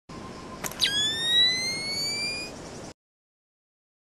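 Camera sound effect: a short beep, a click, then a high whine rising slowly in pitch for nearly two seconds, over a hiss that cuts off suddenly.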